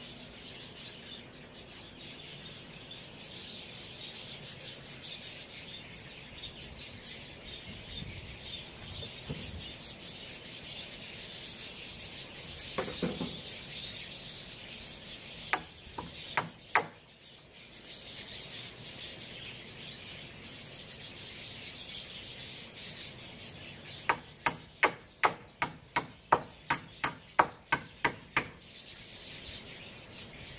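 Steel hammer driving nails into wooden planks: three sharp blows about 16 seconds in, then a quick, even run of about a dozen blows near the end, roughly three a second. Before the blows, quieter rubbing and scraping of wood being handled.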